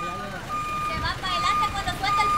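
Reversing alarm of a Kia K2700 truck beeping at an even pace, a little more than one beep a second, over a low engine rumble: the truck is in reverse gear.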